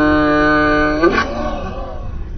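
A woman's voice holding one long sung note, the drawn-out end of a sung "hello". It stays at a steady pitch and stops about a second in.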